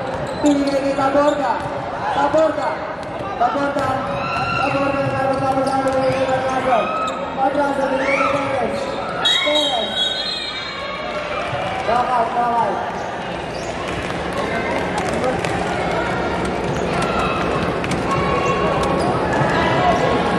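Basketball being dribbled and bounced on a hardwood court, amid the shouting voices of players and spectators in a large gym.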